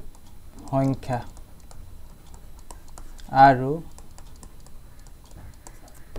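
Light, irregular clicking and tapping of a pen stylus on a writing tablet as words are handwritten. A man's voice says a short word about a second in, and makes a louder brief vocal sound a couple of seconds later.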